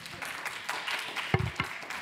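Audience applauding at the close of a panel session, with a single thump about a second and a half in.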